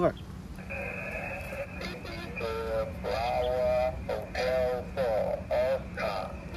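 Shortwave transceiver speaker receiving a single-sideband voice on the 20-metre band: a garbled, off-tune voice over band noise and a low hum, with a steady whistle from an interfering carrier coming in just under a second in.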